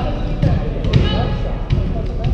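Volleyballs being struck and bouncing in a gymnasium: a few ball thumps, the two sharpest about half a second apart, over the background talk and calls of players.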